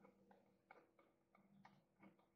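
Near silence with a few faint, irregular ticks from a felt-tip marker writing on paper.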